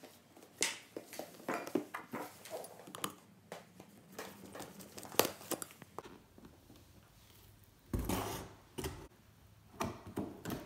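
Knife blade slitting the seal along the lid of a cardboard binocular box, heard as a run of small scrapes and ticks. This is followed by a louder rustle about eight seconds in, as the box lid is lifted open.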